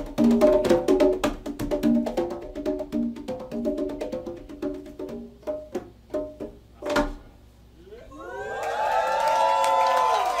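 Hand-drum solo on congas: quick run of open tones and slaps that thins out and ends on one loud accent about seven seconds in. After a short pause an audience cheers and shouts.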